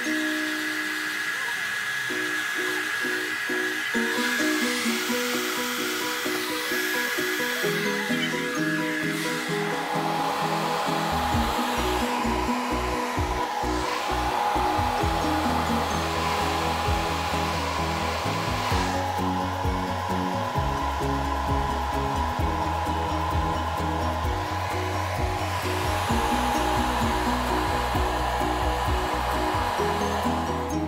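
Handheld hair dryer running steadily while background music plays.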